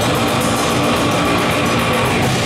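Heavy metal band playing live at a fast tempo: distorted electric guitar, bass guitar and drums, with rapid, even drum hits driving the beat.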